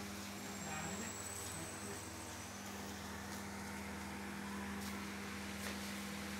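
A steady machine hum at one low pitch with its overtones, with a few faint clicks.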